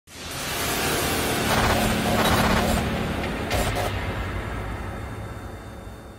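Intro sound effect for a logo opening: a rushing swell of noise that rises within the first second and slowly fades out over the last few seconds, with a steady low hum underneath.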